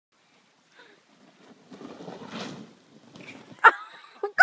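Snow tube sliding down a packed snow slope: a hiss of snow that builds and peaks about two and a half seconds in, then fades. Near the end comes one short, sharp, high yelp.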